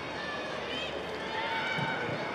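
Football players' distant shouts and calls on the pitch, short rising-and-falling voices over the steady open-air hum of the ground, with a dull thump near the end.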